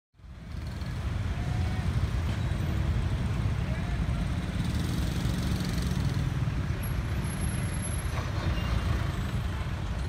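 Steady rumble of busy road traffic, engines running, with indistinct voices mixed in; it fades in over the first second.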